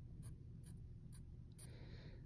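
Faint pencil on paper: a few short taps and light scratches as a pencil tip marks points on a graph worksheet.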